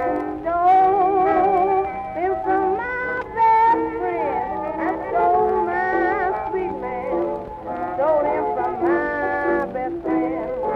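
Late-1920s small jazz band recording playing an instrumental passage, several horn lines with vibrato moving together over the rhythm section.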